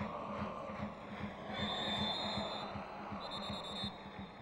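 Football stadium crowd with a supporters' drum beating steadily, about two and a half beats a second, and a referee's whistle blown twice: a blast of about a second near the middle and a shorter one near the end, signalling a stoppage for offside.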